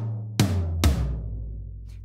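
Big eight-layer tom sounds played from a keyboard. Two hits land about half a second apart, the second lower in pitch, and each rings out in a long, fading low boom.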